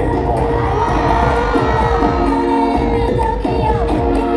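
Loud music playing over a PA system with a crowd cheering and shouting over it.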